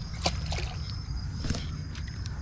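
A hooked channel catfish splashing and sloshing at the water's surface, with a few short, sharp splashes.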